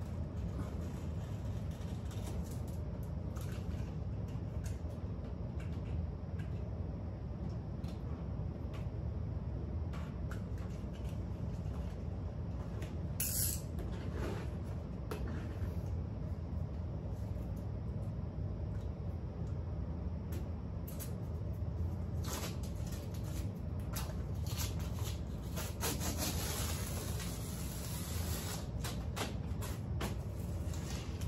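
Faint scratching and rustling of a blade double-cutting grasscloth wallpaper along a steel taping knife, over a steady low hum. A denser stretch of rustling and tearing comes near the end, as the blue masking tape and the cut-off strip are pulled away.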